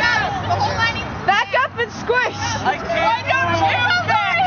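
A crowd of people talking over one another, several voices at once with no single clear speaker, over a steady low hum.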